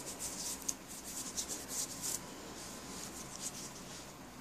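Hands rubbing together, working homemade Vaseline into the skin: soft, quick scratchy strokes, about four or five a second, that fade out about two seconds in.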